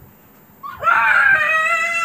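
A young child's long, high-pitched scream of excitement in a game of hide and seek. It starts about half a second in and holds for about a second and a half.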